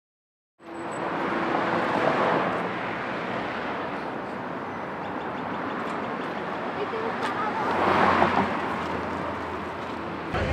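City street ambience: steady traffic noise mixed with voices, starting abruptly about half a second in and swelling twice, around two seconds in and again near eight seconds.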